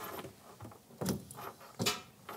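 Soft handling noises: two dull knocks with some rustling, about a second in and near the end, as a wooden kitchen cabinet door under the sink is handled.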